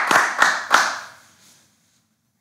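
Hands clapping in a steady beat, about three claps a second; three claps, the last under a second in, then the sound dies away.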